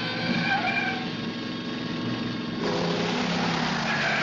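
A car driving fast along a street, its engine steady underneath with a few short wavering squeals early on. The noise jumps suddenly louder and rougher about two and a half seconds in.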